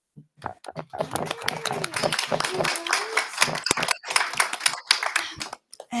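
Audience applauding: a run of clapping from many hands that starts about a second in and stops shortly before the end.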